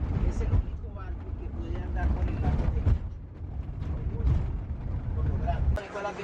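Low rumble of a moving vehicle heard from inside the cabin, with faint indistinct voices; it cuts off abruptly near the end.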